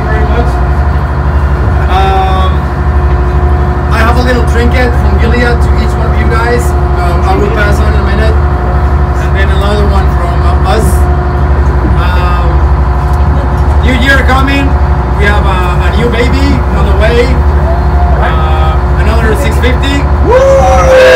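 Loud, steady low drone of the ship's engine running, with an even pulsing rumble and a constant hum, while a man's voice speaks over it.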